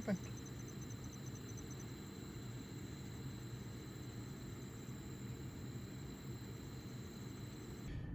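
Night insects trilling steadily in a high continuous tone, with a second, faster-pulsing chirp that stops about a second and a half in, over a low steady rumble.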